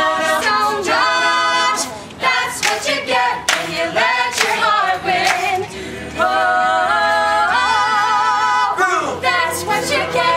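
Mixed a cappella vocal group of men and women singing a pop-rock song in harmony, voices only, with held chords in the middle and sharp percussive hits between the sung phrases.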